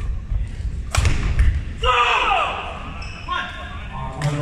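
Badminton racket strikes the shuttlecock once with a sharp crack about a second in, then a man's voice calls out. Low thuds of footsteps on the wooden court run underneath.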